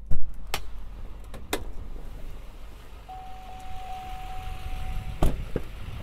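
Power sliding rear window of a pickup's cab: a few clicks, then its electric motor runs with a steady whine for about two seconds and stops with a loud thump, followed by one more click.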